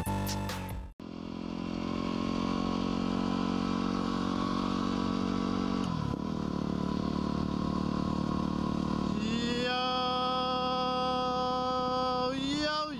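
Yamaha WR250R's single-cylinder four-stroke engine running steadily while riding, its revs dipping briefly and recovering about halfway through. Electronic music cuts off about a second in, and a held chanting voice joins over the engine near the end.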